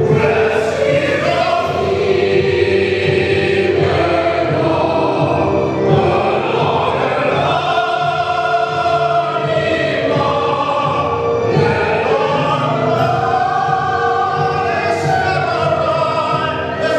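A female soloist singing long notes with vibrato, with a mixed choir and keyboard accompaniment behind her.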